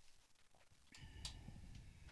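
Near silence: faint outdoor ambience, with a faint click and a soft held tone about halfway through.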